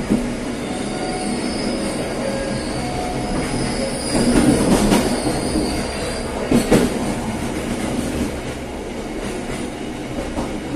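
Train wheels running over the tracks through station pointwork, with steady rail noise and a high wheel squeal. There are bursts of clattering as the wheels cross the switches, about four to five seconds in and again just before seven seconds.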